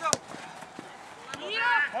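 A single sharp thud of a football being kicked, then a shout from the pitch near the end.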